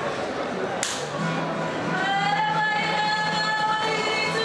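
A single sharp slap about a second in, then a group of voices begins singing long held notes in harmony, the start of a Māori group's song.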